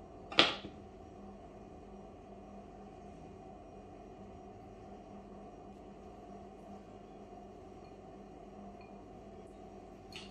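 Steady low background hum in a small kitchen, with one short, sharp swish-like noise about half a second in.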